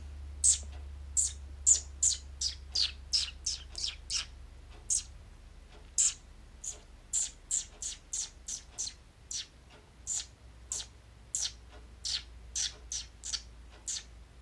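A person chirping through pursed lips to imitate a pet bird: short, sharp, high squeaks that fall in pitch, about two a second.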